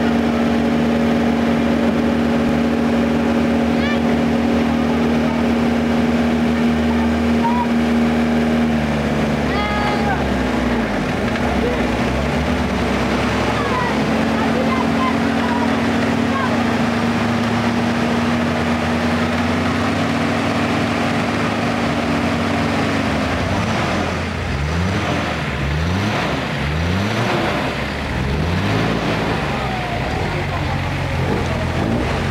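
Off-road 4x4's engine working through deep mud, holding a steady drone at constant revs for long stretches. Over the last several seconds it is revved up and down repeatedly.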